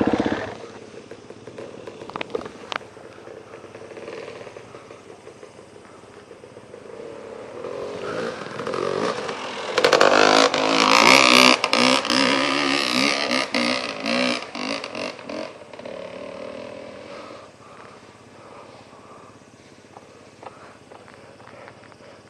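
An off-road motorcycle engine approaching along a dirt track, its note rising and falling as the throttle works, loudest about ten to twelve seconds in and then fading away. At the very start a close engine cuts off abruptly.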